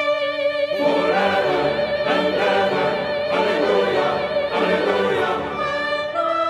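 Church choir singing over held brass chords; the voices come in about a second in and drop out near the end, leaving the sustained chord.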